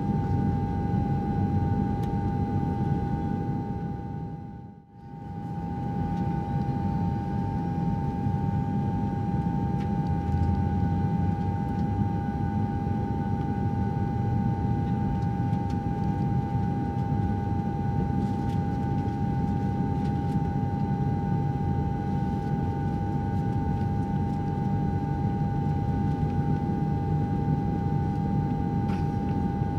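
Airliner cabin noise heard from a window seat: a steady low rumble with a steady high hum from the engines. The sound fades away and back in briefly about five seconds in.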